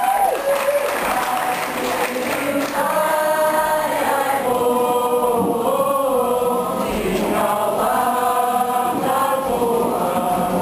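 A kapa haka group singing a Māori waiata-a-ringa (action song) together in chorus, long held notes over a strummed guitar.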